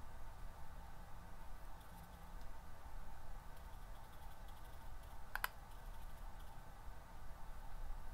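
Light taps and clicks of a powder brush against a jar of loose setting powder as the brush is dipped and tapped off, with one sharp click a little past halfway, over a faint steady room hum.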